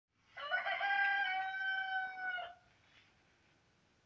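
A rooster crowing once: a single long call of about two seconds that stops abruptly.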